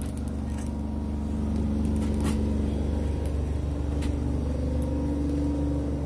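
Wire shopping cart being pushed along, a steady low rumble with a held hum and a few light clicks and rattles.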